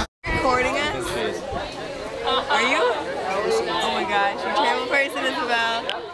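Several people talking over each other: overlapping group chatter.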